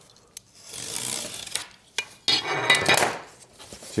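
A hand tool scraping along cardboard against a metal ruler, scoring it for a fold: a softer stroke about half a second in, a couple of sharp taps, then a louder rasping stroke midway.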